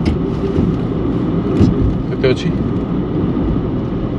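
Steady road and engine rumble inside the cabin of a moving car.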